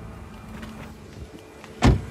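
A car door shutting with a single sharp thump near the end, over a faint steady background hum.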